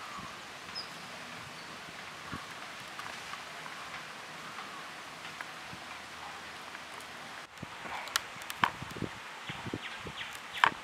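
Steady outdoor background noise, then, after a cut about three-quarters of the way in, a run of soft clicks and wet handling noises from hands rubbing spice paste into a raw whole duck on a steel plate.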